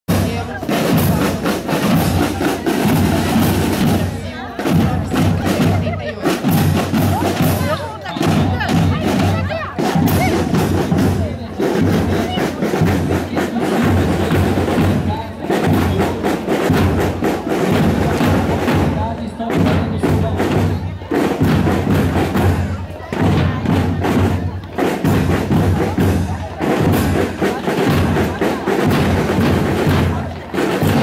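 A school marching band's drum corps playing a steady march beat on bass and snare drums.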